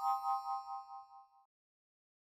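A bright, bell-like chime of several notes sounding together, struck once, wavering as it rings and fading out in about a second and a half.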